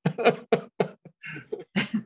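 A person laughing in a series of short bursts, heard over a video-call connection.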